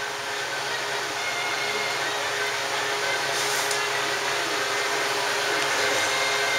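Steady whooshing hiss over a low hum, the sound of a fan or blower motor running, slowly growing louder.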